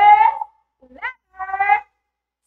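A woman's voice drawing out a word, then two short high-pitched vocal sounds: the first a quick upward glide, the second a brief steady note.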